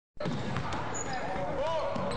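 Basketballs bouncing on a gym floor, a scatter of separate thumps, with faint voices in the background.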